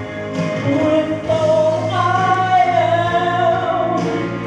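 A man singing a slow gospel song into a handheld microphone with musical accompaniment, holding a long note through the second half.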